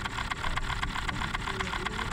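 A camera shutter firing in a rapid continuous burst, a run of quick, evenly spaced clicks over a low rumble.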